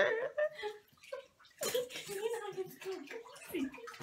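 A woman sobbing: wavering, wailing cries with shaky, noisy breaths, broken by a short pause about a second in.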